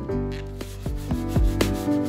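The abrasive side of a kitchen sponge scrubbing tile-floor grout coated with toilet-cleaner gel, a rough rubbing, under background music with plucked guitar notes.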